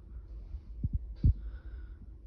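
Handling noise on a handheld phone's microphone while it pans: a low rumble with a few soft thumps, the loudest about a second and a quarter in, and a faint hiss.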